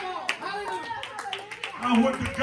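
A few sharp, irregular hand claps over a man's speaking voice.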